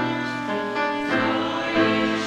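Many voices singing a verse of a Russian-language hymn together, to instrumental accompaniment.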